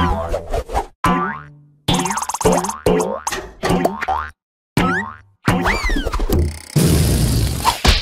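Cartoon boing sound effects, a quick run of springy bounces with sweeping rising-and-falling pitch glides, as characters bounce on a rubber balloon. Near the end a loud rush of noise lasting about a second as the balloon bursts.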